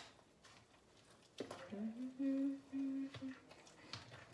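A woman humming softly for about two seconds, starting about a second and a half in: a short rise in pitch, then a level tone broken into three held notes.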